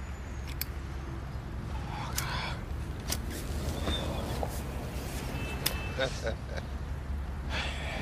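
Steady low rumble inside a car cabin, with a short soft hiss about two seconds in and a few faint clicks.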